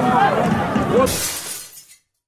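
Voices of players and spectators calling out at a football match. About a second in, a short hissing noise cuts in, and then everything fades out to silence.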